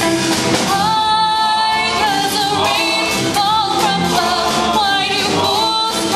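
Live band playing a doo-wop song: a female lead voice sings with male backing vocals over electric guitar, upright bass and drums.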